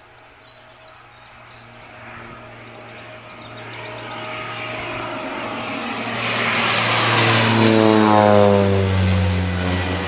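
Low-flying single-engine propeller plane passing overhead: its engine drone builds over several seconds, is loudest about eight seconds in, and drops in pitch as it goes past.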